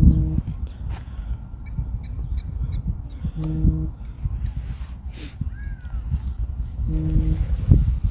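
Wind buffeting the microphone, heard as a low rumble, with three short pitched sounds about three and a half seconds apart.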